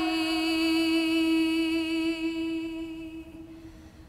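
Background music: a single long sung note, held for about three and a half seconds with a slight waver, fading away near the end.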